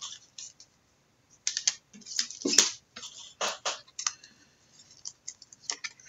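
Typing on a computer keyboard: irregular keystroke clicks in short clusters, as a player's name is entered into a search.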